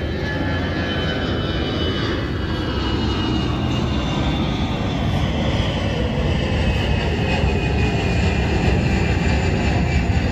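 An airplane flying past: a steady engine rumble with a faint whine that slowly drops in pitch as it goes by.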